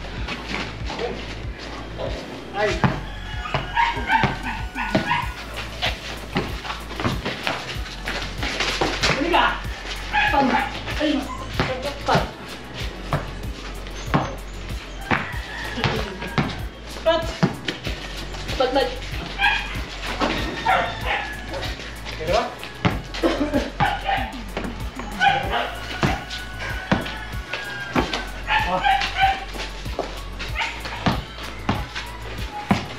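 Basketball bouncing on a concrete court, many short knocks, amid players' shouts and calls, with a dog barking.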